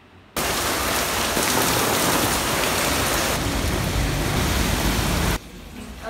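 Heavy rain pouring down, a loud steady noise that starts suddenly about half a second in and cuts off about a second before the end.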